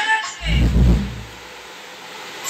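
Music playing through a 5.1-channel MOSFET power amplifier cuts away while its knobs are turned, and about half a second in a deep bass boom from the woofer sounds for about a second before the sound drops low.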